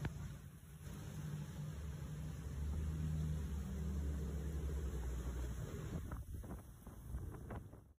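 A vehicle engine running with a low, steady hum over the wash of floodwater as trucks drive through a flooded street. A few short knocks come near the end.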